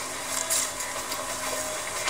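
Steady background hiss and room noise, with a faint low hum that fades out near the end.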